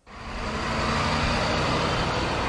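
A school bus engine running as the bus drives past, a steady vehicle sound with road noise. It comes in abruptly at the start and holds an even level.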